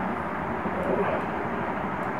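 Steady background noise, an even hiss with a low rumble under it, with a few faint clicks about a second in.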